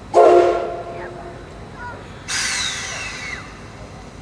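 C56 steam locomotive's whistle gives one short, loud blast that dies away within about a second. About two seconds later a burst of steam hisses for about a second, with a falling pitch in it.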